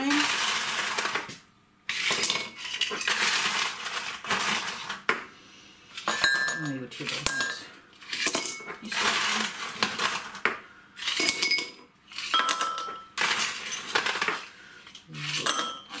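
Ice cubes rattled in a plastic box and dropped into glass tumblers, clinking against the glass. It comes in short bursts about once a second, ten or so times.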